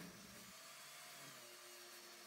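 Near silence: faint hiss with a faint steady hum.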